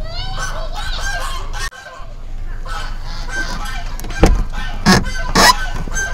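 Repeated bird calls, then three loud knocks in the last two seconds.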